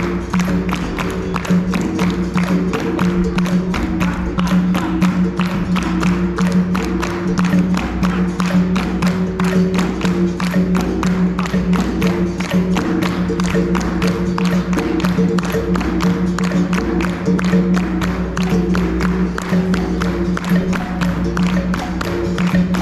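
Capoeira roda music: a steady twanging berimbau over an atabaque drum, with the circle's even hand clapping at about three claps a second.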